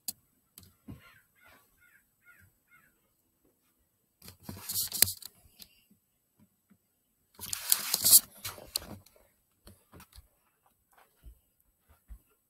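A flock of crows cawing at a distance, a quick run of short calls about a second in. Two louder noisy bursts follow, around the middle and again a few seconds later.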